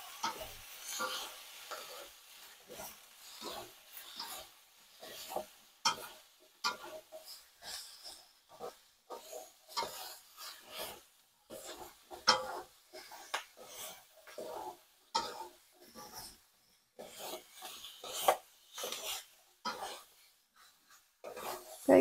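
Two red spatulas tossing and stirring sliced bell peppers and onions in a wok: fairly quiet, irregular scrapes and soft knocks of the spatulas against the pan, stroke after stroke with short pauses.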